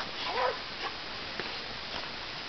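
Young American Staffordshire Terrier whining twice: two short calls, each rising and falling in pitch, the first right at the start and the second about half a second in.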